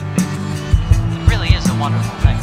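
Progressive rock music: drums hitting in a steady beat over bass, with a lead line sliding up and down in pitch.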